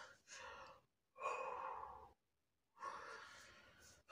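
A woman breathing out heavily in three long sighs, about a second apart. It is the nervous breathing of someone whose heart is racing.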